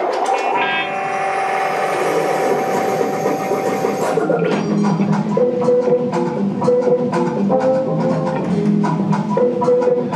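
Live instrumental rock band: an electric guitar chord rings out for about four seconds, then drums and a repeated guitar figure come in.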